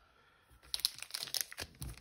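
Magic: The Gathering booster packs' plastic-foil wrappers crinkling and crackling as they are picked up and handled, starting after a short near-silent moment about half a second in.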